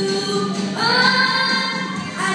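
Voices singing together in a choir-like blend over backing music: a held note gives way to a new sung phrase about three quarters of a second in.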